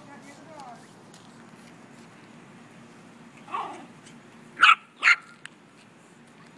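Small dog barking during play: one bark about three and a half seconds in, then two loud, sharp barks half a second apart near the end.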